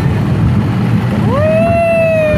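Kiddie roller coaster car rumbling along its track, with wind buffeting the phone's microphone as it moves. About a second in, a rider lets out a high, held "whoo" that rises quickly and then slowly sinks.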